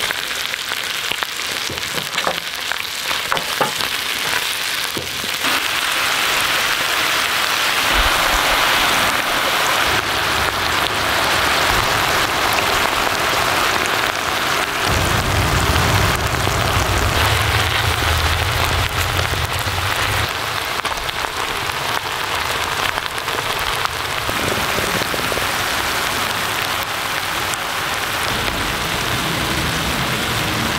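Bacon, garlic and vegetables sizzling in a foil-lined pan, a steady frying hiss. In the first few seconds there are scattered pops and crackles, and from about five seconds in the sizzle grows fuller. A low rumble joins around the halfway point.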